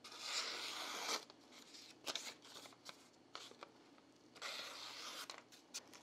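Freshly sharpened kitchen knife slicing through a paper slip in an edge-sharpness test: two long, faint cuts of about a second each, one at the start and one after about four and a half seconds, with a few small paper crackles between.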